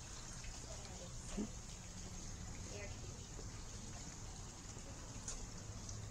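Low, steady background noise with faint distant voices and a few light clicks.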